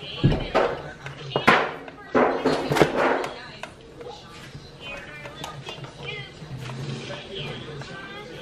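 Plastic side-mirror parts and wiring being handled: a few knocks and rustles in the first three seconds, then quieter fiddling. Voices and music play faintly in the background throughout.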